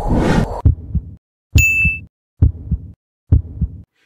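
Intro sound effects: a low rushing swell, then three heartbeat-like double thumps a little under a second apart, the first with a short high ding.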